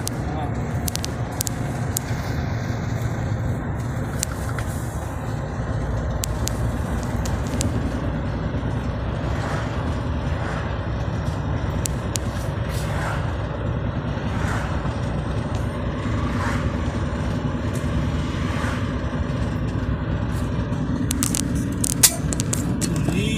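Steady road noise inside a moving vehicle: engine and tyre rumble at cruising speed on the highway.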